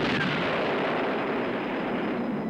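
Bomb explosion: a sudden loud blast right at the start, followed by a long rush of noise that slowly dies away.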